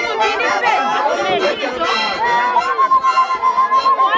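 A crowd of voices singing and calling out over one another, with one long high note held steady from about two and a half seconds in.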